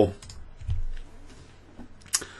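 A few faint clicks of a computer keyboard or mouse, as a chess move is played through on screen in chess software.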